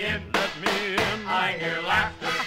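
A 1951 popular song played from a 78 rpm record: an orchestra with male voices singing.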